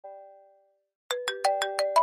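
Mobile phone ringtone: a single chime fading away, then about a second in a quick run of six bright chiming notes.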